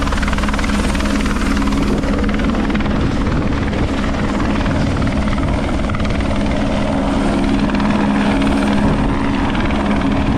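Rescue helicopter flying low overhead, its rotor and turbine a loud, steady drone with a constant low hum.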